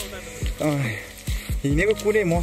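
A singing voice over a steady held tone, with a few short low thumps and a hiss underneath.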